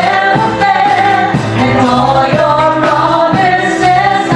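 Live worship band playing a song: a woman singing lead with backing singers, over keyboard, electric guitars, bass and drums, with a steady beat. The lyrics sung here are "They never fail, and all Your promises are true."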